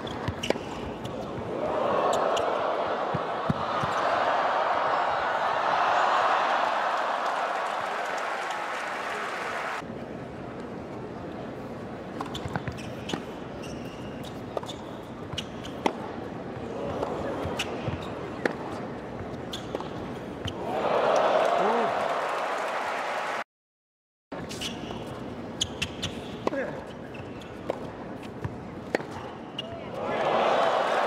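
Tennis rallies in an indoor arena: sharp racket-on-ball hits and ball bounces. Crowd cheering swells after points, longest a couple of seconds in and again briefly about two-thirds through.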